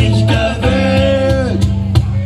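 Live band playing amplified music with guitars, bass and drums, a male singer holding a long note in the middle that falls away just before the end.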